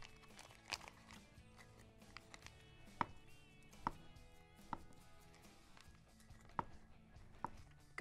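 Kitchen knife cutting through a log of soft goat cheese and tapping the wooden cutting board: about six separate light knocks at irregular intervals. Faint background music plays underneath.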